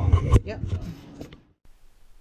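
Mostly speech: a man's short "yep" with a sharp knock and handling noise, then a sudden drop to faint room tone.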